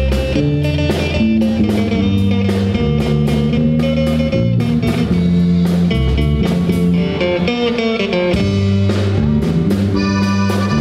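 Live norteño-style band playing an instrumental passage: button accordion, electric guitar, electric bass and drum kit keeping a steady beat.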